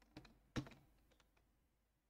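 A few faint computer keyboard key clicks in near silence, the loudest about half a second in.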